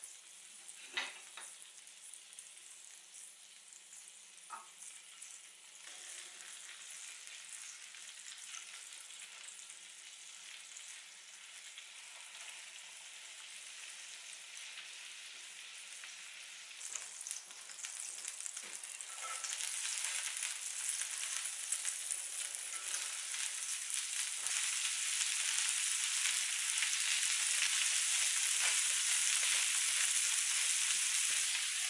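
Hamburg steak patties sizzling in oil in a frying pan, with a sharp knock about a second in and another a few seconds later as the wooden spatula flips a patty against the pan. The sizzle grows steadily louder over the second half.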